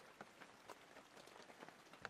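Faint rain pattering, with scattered light ticks of drops.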